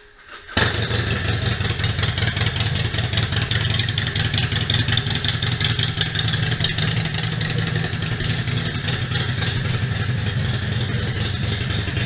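Harley-Davidson Iron 1200's air-cooled 1200 cc V-twin engine running steadily under way, mixed with heavy wind noise on the camera microphone. The sound cuts in abruptly about half a second in.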